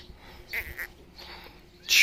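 A few short, high animal calls, the last and loudest just before the end.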